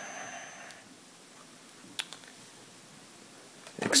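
A single sharp click about two seconds in, like a toggle switch being flipped on the Neutrino Wand prop toy, over faint steady background noise.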